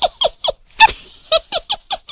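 A high cackling laugh: a rapid run of short syllables, each falling in pitch, about six a second, breaking off just after half a second in and starting again.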